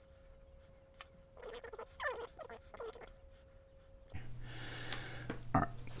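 Cloth wiping a knife blade, with a run of short falling squeaks from the cloth rubbing the steel, then a light click near the end as the blade is set down on the mat.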